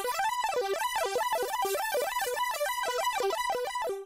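Electronic melodic instrument from the Maschine software, played by strumming up and down the Maschine Jam's touch strips across a many-note user chord: quick rising and falling runs of notes. It cuts off abruptly at the end.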